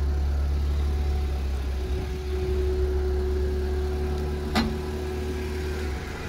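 A Hyundai sedan running at low speed as it backs itself out of a garage under remote control from the key fob, heard as a steady low hum with a steady mid-pitched tone over it. A single short click comes about four and a half seconds in.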